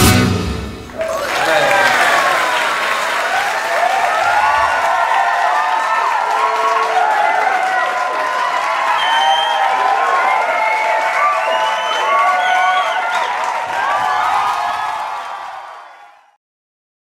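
A live flamenco piece with guitar ends in the first second, then the audience applauds with cheering voices, which fades out near the end.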